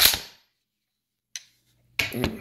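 Century Arms RAS47 AK-pattern rifle's action being cycled by hand: a loud metallic rack of the bolt carrier sliding back and slamming forward at the very start, then one short click about a second and a half in.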